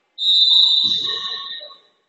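Referee's whistle blown once in a single long blast, a steady high tone that fades away near the end; in volleyball this is the signal that authorises the serve.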